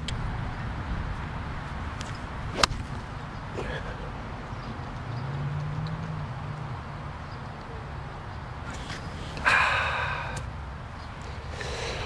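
A golf club striking a ball on a tee shot: one sharp click about two and a half seconds in, over a steady low outdoor rumble. A brief hiss follows near the end.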